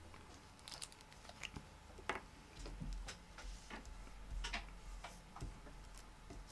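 Faint, scattered small clicks and taps from hands handling crafting supplies on a tabletop: a liquid glue bottle being picked up and uncapped and paper die cuts being moved.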